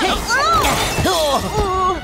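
Glass shattering sound effect right at the start, followed by short pained cries and groans from a cartoon character's voice.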